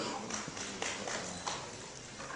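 A pause in a speech: faint hall room tone with several light, scattered clicks and knocks.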